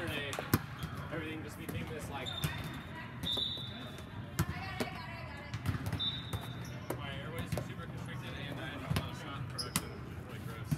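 Volleyball game sounds in a large sports dome: several sharp hits of the ball against hands and floor, a few short high sneaker squeaks on the court, and a background of players' voices.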